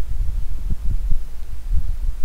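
A loud, uneven low rumble with soft irregular thumps.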